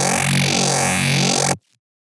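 Serum software synthesizer holding one steady low bass note from a single oscillator on the Misfits wavetable, pitched down two octaves, with two detuned unison voices beating against each other. It cuts off sharply about one and a half seconds in.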